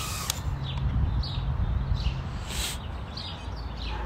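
Small birds chirping in short, repeated calls over a steady low outdoor rumble, with a sharp click just after the start and a brief hiss midway.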